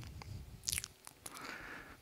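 Quiet room tone with a few faint, short clicks a little under a second in and a couple more later.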